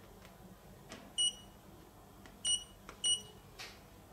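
Three short, high electronic key beeps from a KOMSHINE handheld optical light source as its buttons are pressed, the second about a second after the first and the third half a second later, with faint plastic button clicks in between.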